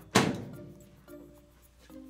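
A microwave oven door pushed shut with a single thunk just after the start, over quiet background music.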